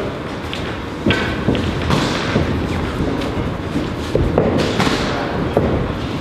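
Irregular dull thuds from boxing pad work: gloved punches landing and feet moving on the ring canvas, several in a few seconds.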